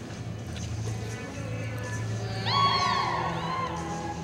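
Arena spectators whooping and whistling, a short loud burst of several voices starting about two and a half seconds in, over steady background music.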